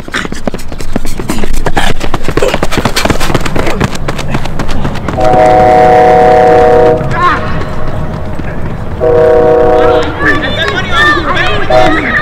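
A train horn sounding two long, steady blasts, the first about five seconds in and the second about nine seconds in, over kids' shouting voices.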